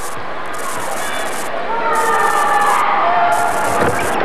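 Basketball crowd in a gym, a steady din of many voices that swells with scattered shouts about halfway through.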